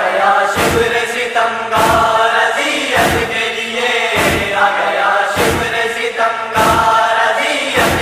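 A chorus of voices chanting a nauha lament, with a sharp percussive beat about every 1.2 seconds keeping the rhythm.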